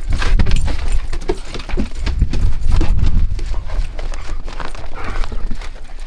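Irregular footsteps and knocks of walking across a wooden floor and out into snow, over a low rumble.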